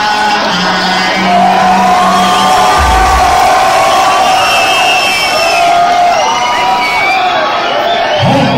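Concert crowd cheering, whooping and yelling over the music, with a held bass note for the first couple of seconds and a low bass boom about three seconds in.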